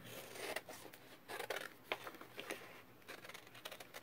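Small fussy-cutting scissors snipping through printed paper: a string of soft, irregular snips as a small piece is cut out from a sheet.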